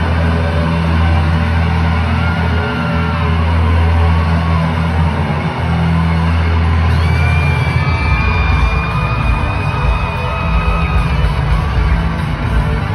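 Live pop-rock band playing through a stadium PA, heard from far back in the stands. A steady heavy bass gives way to a busier low end about two-thirds of the way through, with a long held high note over it.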